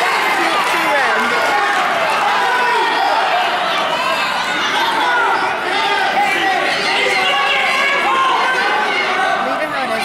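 Crowd of spectators shouting and calling out, many voices overlapping.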